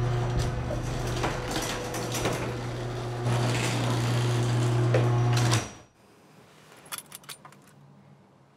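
Garage door opener running, the door rattling and clicking along its track with a steady low motor hum, stopping abruptly about five and a half seconds in as the door reaches the floor. A few faint clicks follow.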